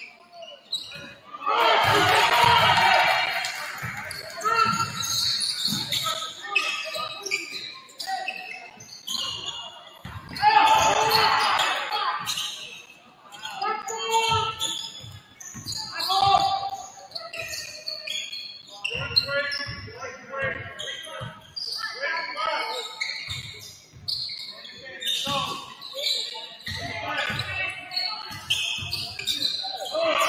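A basketball dribbled and bouncing on a hardwood gym floor during play, with players and spectators shouting, loudest in bursts a couple of seconds in and again around the middle. Everything rings in a large gym.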